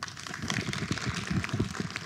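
Audience applauding at the end of a talk, a dense patter of clapping that thins out near the end.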